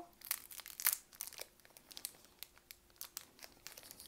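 Foil wrapper of a Pokémon trading-card booster pack crinkling as it is opened by hand, in irregular crackles.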